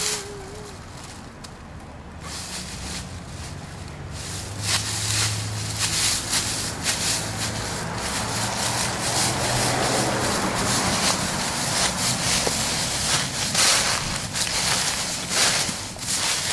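Dry fallen leaves rustling and crunching under a toddler's small footsteps as he wades through a deep drift of them, the crunching getting busier from about four seconds in. A low rumble runs underneath through the middle stretch.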